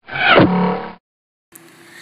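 A short intro sound effect over a logo card, about a second long: a falling swoosh over a held musical chord. Faint outdoor background follows near the end.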